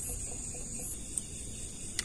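Steady high chirring of night insects such as crickets, with a few brief faint clicks.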